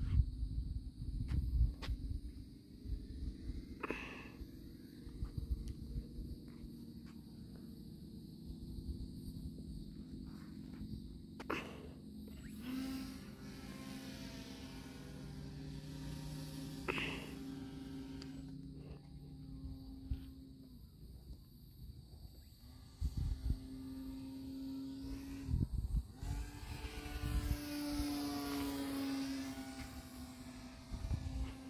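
Electric motor and propeller of an E-flite Night Radian 2.0 m glider running overhead, a steady drone in long stretches from about midway, with breaks near the end. Low wind rumble on the microphone and a few knocks come earlier.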